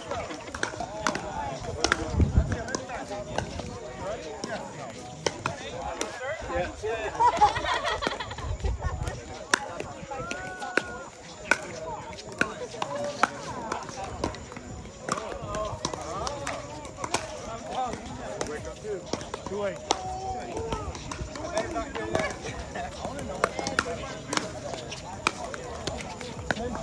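Pickleball paddles striking a hard plastic ball: sharp pops at irregular intervals through the rallies, over background chatter.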